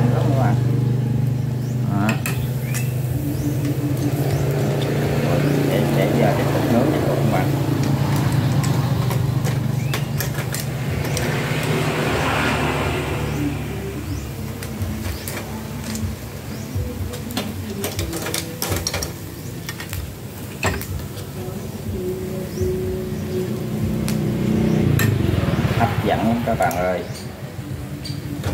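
Metal tongs clicking against the wire rack of a charcoal grill and against snail shells, with a brief sizzle about halfway through as chili-tomato sauce goes onto the hot snails. Under it runs a steady low engine-like hum, strongest early on, fading after about ten seconds and returning near the end.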